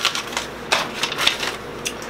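Small items being handled and rummaged through: a run of light clicks and rustles.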